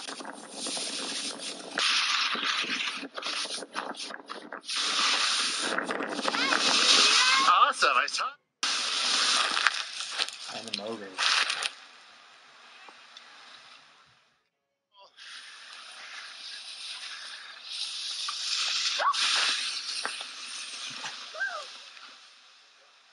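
Wind buffeting a camera microphone and skis hissing over snow during a downhill ski run, with a few short indistinct voice sounds. The sound cuts out completely twice, briefly.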